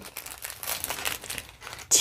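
Small clear plastic zip-top bags of diamond painting drills crinkling as they are handled, a dense run of light crackles.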